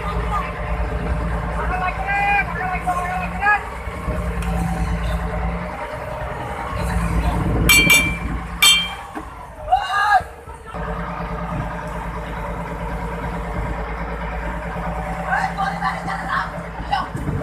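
A boat engine running steadily under wind and sea noise, with men's voices shouting at several points; a few sharp clanks come about eight seconds in.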